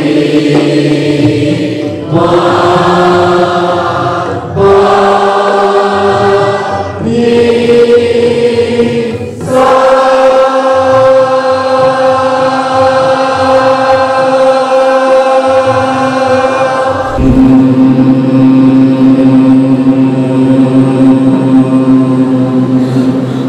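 Many voices chanting together in long held notes, each note a step higher than the last, with a short break for breath every couple of seconds. About halfway through one note is held for seven or eight seconds, then the chant drops to a lower note near the end.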